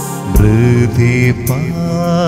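Keyboard music from an instrumental interlude of a devotional funeral song. A louder phrase comes in about a third of a second in, with bass notes under a lead melody that slides between notes and wavers.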